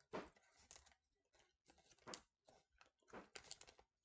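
Plastic candy bag of Starburst jelly beans crinkling quietly in three short bursts as fingers rummage in it for a bean.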